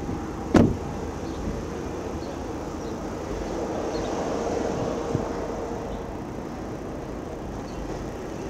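A car door shuts once with a sharp knock about half a second in. After it comes steady outdoor noise with a vehicle hum that swells and fades over the middle seconds.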